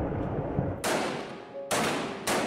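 Gunfire echoing in a built-up street: a low rumble, then two sharp shots just under a second apart, each with a long echo that fades away.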